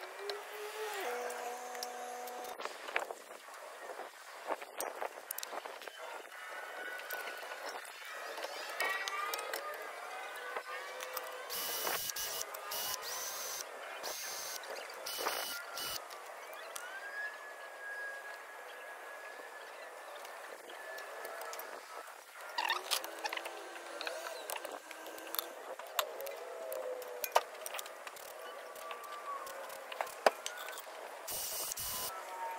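Clinks, knocks and scrapes of hand tools against a car's front brake caliper during a brake pad change, with a few short bursts of hiss in the middle, over faint background music.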